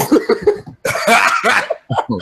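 Two rough, breathy bursts from a man's voice, the second about a second long, heard over a voice-call line.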